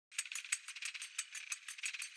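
Quick, light rattling of high-pitched ticks, several a second, like a shaker, opening the soundtrack of a title sequence.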